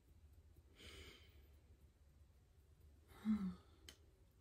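A woman's quiet breathing: a soft breath about a second in, then a short voiced sigh falling slightly in pitch a little after three seconds in. A faint click comes just before the end.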